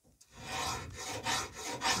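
Pencil scratching a line along masking tape stuck on a copper pipe, a dry rubbing that starts a moment in and goes in a few uneven strokes.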